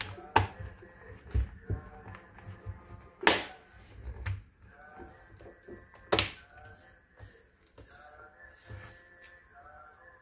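The plastic bottom cover of a laptop is pressed down onto the chassis, its locking clips snapping into place with a few sharp clicks and softer taps, over quiet background music.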